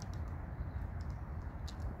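Faint crinkles and small ticks of thin plastic protective film being lifted at a corner of a car stereo head unit's screen, over a steady low rumble.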